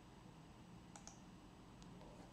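Near silence: room tone with a few faint clicks, a close pair about a second in and one more near the end.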